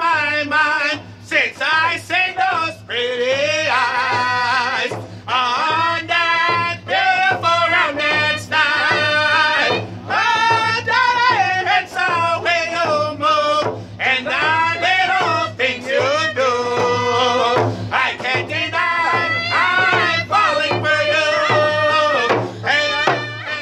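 Powwow hand drum song: men singing loudly in a high register over a steady beat on rawhide hand drums struck with beaters.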